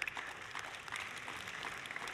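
Soft rustling and shuffling of a seated congregation settling into prayer: many small faint clicks and rustles over a steady hiss.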